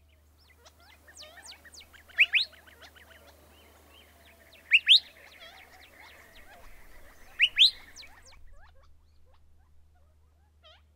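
Birds chirping: three loud pairs of quick rising chirps, about two and a half seconds apart, over many fainter chirps. The chirping stops shortly before the end.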